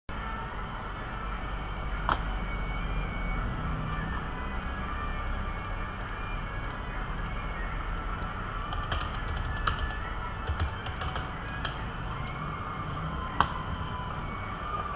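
Computer keyboard keys clicking in a few scattered presses, with a quick run of clicks about nine to twelve seconds in, over a steady low background rumble.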